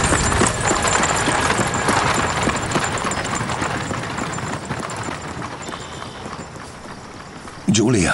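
Horse-drawn carriage passing: hooves clip-clopping with the rattle of the carriage, loud at first and fading away over about six seconds. A short spoken word comes just before the end.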